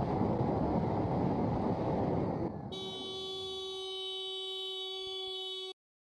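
Wind and road rush on a moving motorcycle's microphone, then about two and a half seconds in a single steady horn blast is held for about three seconds and cuts off suddenly.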